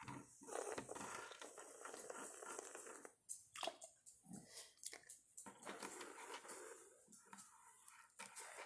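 Faint sucking and slurping through a plastic drinking straw, with a few small crinkles and clicks.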